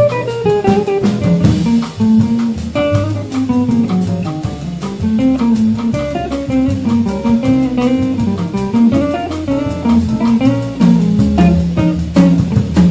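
Background music: a live jazz quartet, with guitar playing the melody over bass and drums.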